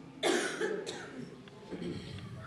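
A person coughing twice into the room's sound: a sharp, loud cough about a quarter second in and a weaker one just before a second in.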